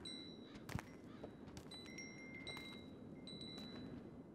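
Small metal bells on a camel's harness ringing faintly a few times as it walks, each a clear, short-lived ring. A sharp knock sounds just under a second in, over a low, steady outdoor hush.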